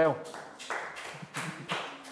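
A small group of children clapping in a round of applause: a handful of loose, uneven claps that thin out and fade toward the end.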